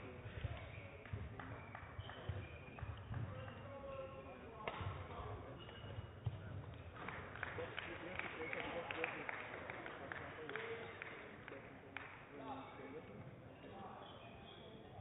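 Indoor badminton hall background: indistinct voices with scattered short clicks and knocks throughout.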